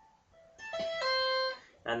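Electric guitar played clean with two-handed tapping and pull-offs on the high E string: a higher note about half a second in, then a step down to a lower, held note, as the fingers pull off to the 12th and then the 8th fret.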